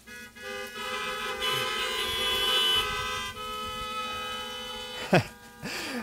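Several car horns honking together, overlapping steady tones at different pitches that swell and then die away after about five seconds. A man laughs near the end.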